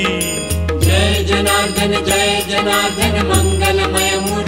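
Recorded Marathi devotional song (bhajan) with a steady percussion beat over a low drone, and a chanting voice coming in about a second in.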